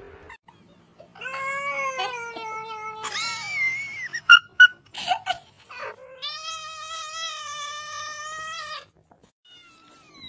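Cats meowing. A drawn-out, slightly falling meow comes about a second in, then a jumble of short sharp cries, then one long steady yowl of nearly three seconds.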